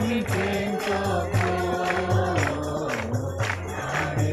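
Gospel song with group singing over a steady bass beat and jingling percussion like a tambourine.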